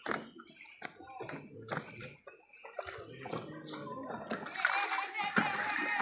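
Footsteps knocking on wooden stairs at an uneven pace, with people's and children's voices in the background that grow louder in the last second or two.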